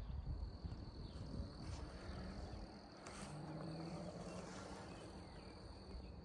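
Faint outdoor ambience: a steady high-pitched insect trill over a low, uneven rumble.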